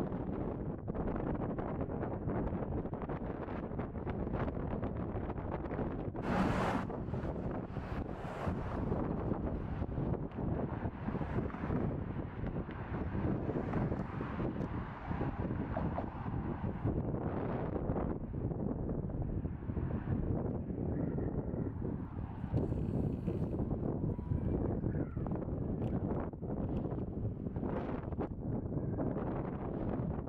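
Wind blowing across the microphone outdoors, an uneven noisy rush that swells and drops, with a brief louder burst about six seconds in.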